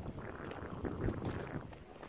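Wind rumbling on a phone's microphone as it is carried along, an uneven low noise with no distinct events.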